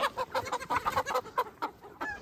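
Brown hens clucking in a quick run of short calls that thin out near the end.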